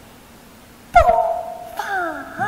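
A female Chinese opera voice crying out about a second in: a sobbing, wailed syllable that slides down and is held briefly, then a second falling cry near the end. A sharp knock comes at the moment the first cry begins.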